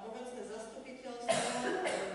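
A person coughing, a sharp burst about a second and a half in and a second one about half a second later, over faint speech.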